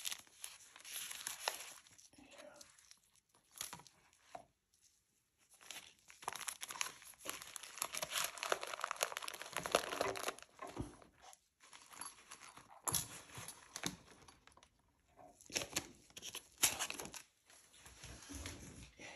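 Crinkling and rustling of thin plastic gloves and paper sachets as they are handled and tucked into the mesh pockets of a first aid kit. The sound comes in several dense, crackly bursts with short quiet gaps between them.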